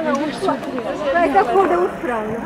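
Group chatter: several women talking at once, no single voice clear.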